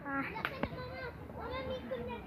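Children's high-pitched voices chattering, with a couple of sharp clicks about half a second in.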